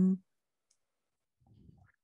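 A woman's held "um" trails off into dead silence, broken only by a faint low noise about a second and a half in.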